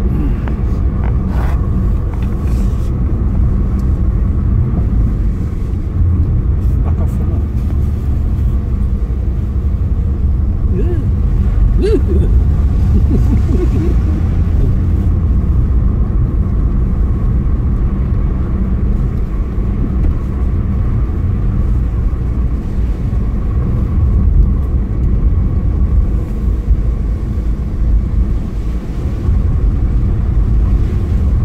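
Steady engine and road noise of a moving car, heard from inside the cabin.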